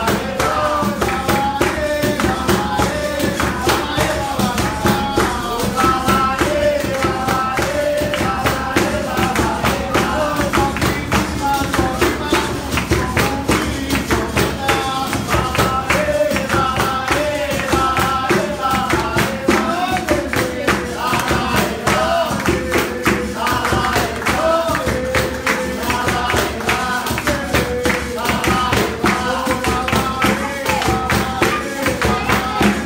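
Capoeira roda music: singing over steady percussion, with the jingles of a pandeiro prominent.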